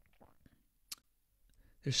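A pause between words, nearly silent, with faint mouth clicks close to the microphone and one sharper click about a second in. A man's voice starts speaking again near the end.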